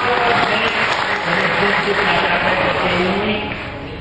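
An audience applauding, with voices heard over the clapping; the applause eases off near the end.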